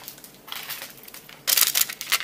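Packaging rustling and crinkling as accessories on cards are handled, with a loud crinkling burst about a second and a half in.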